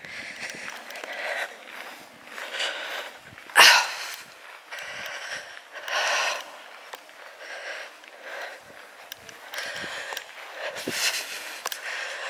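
A person breathing heavily while walking, a noisy breath every second or two, with one sharp, loud sniff about three and a half seconds in.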